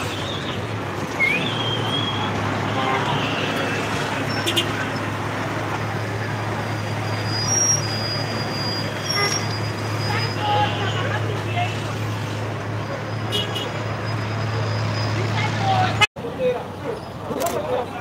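City street traffic noise under a steady low hum, with voices in the background. The sound drops out for an instant near the end.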